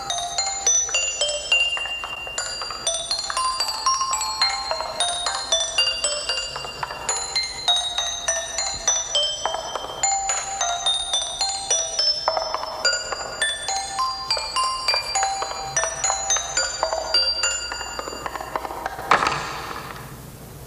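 Music played on a glockenspiel-like mallet instrument: a quick, continuous run of bright, ringing struck notes. The notes stop about two seconds before the end, followed by a short burst of noise.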